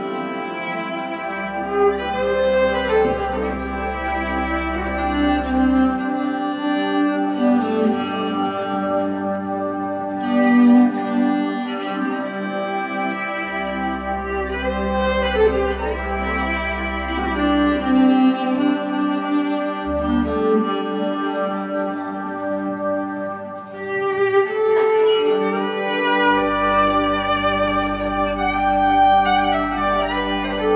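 Live electric violin bowing a Scottish or Irish Highland-style folk melody over electric bass guitar, which comes in with long held low notes several seconds at a time, with gaps between.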